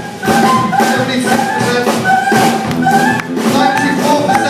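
Live brass band playing, with horns and sousaphone repeating a short riff of held notes over a steady drum beat.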